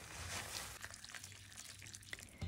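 Faint, quiet wet stirring of spaghetti tossed with tongs in a pan of creamy zucchini sauce as it finishes cooking.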